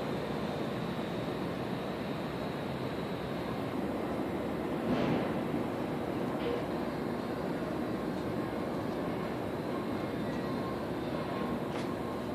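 Steady wash of distant city and traffic noise heard from high above, with a brief swell about five seconds in.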